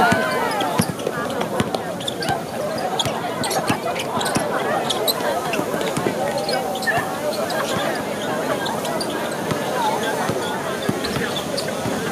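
A basketball bouncing on a hard outdoor court during play, with several separate thuds. Many voices chatter and call out throughout.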